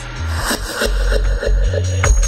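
Late-1990s psychedelic trance track playing, with a deep pulsing bass and a short synth blip repeating about four times a second.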